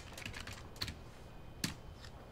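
Typing on a computer keyboard: a run of irregular key clicks, with two sharper, louder keystrokes a little under a second in and near the end.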